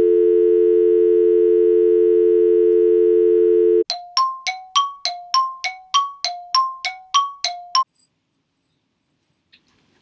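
A steady telephone dial tone, two pitches held without a break, for about four seconds. It cuts off into a quick run of about a dozen bright bell-like dings alternating between two notes, which stop about eight seconds in.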